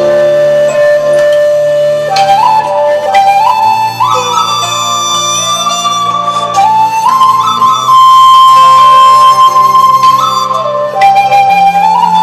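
Instrumental introduction of a Vietnamese song's backing track: a flute plays a slow melody of long held notes, sliding into each new note, over sustained low chords.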